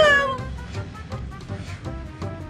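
A short, wavering pitched cry that glides down in pitch in the first half second. After it comes quieter background music with a few faint clicks.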